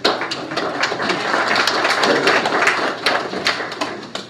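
Congregation applauding with a dense patter of hand claps that starts suddenly and dies away near the end.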